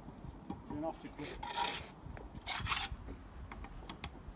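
Steel bricklayer's trowel scraping excess mortar off the face of fresh brickwork, two short scraping strokes about a second apart.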